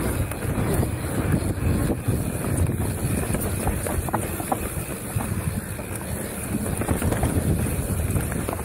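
Wind rushing over the action camera's microphone while a mountain bike rolls fast down a dirt trail: a steady low rumble of tyres on dirt with occasional knocks and rattles from the bike over bumps.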